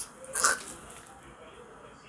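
A walnut shell being prised open with a knife: one short crack about half a second in as the shell splits, then faint handling of the halves.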